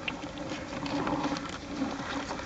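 Crabs scrabbling in a plastic bucket: a patter of small irregular clicks and taps from legs and claws on the plastic and each other in shallow water, over a faint steady hum.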